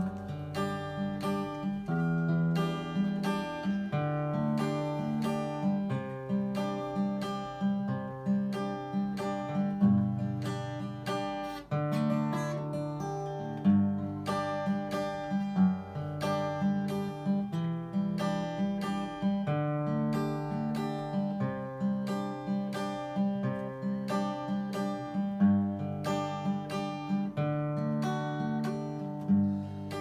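Solo steel-string acoustic guitar playing the instrumental introduction of a mazurka, steady picked chords over a moving bass line.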